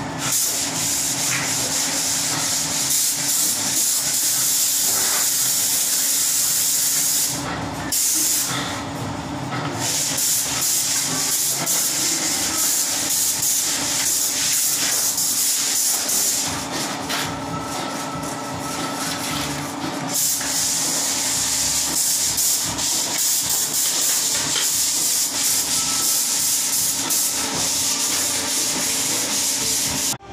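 Compressed-air spray gun hissing steadily as it sprays the wall, cutting out briefly twice, about eight and nine seconds in, over a steady low hum.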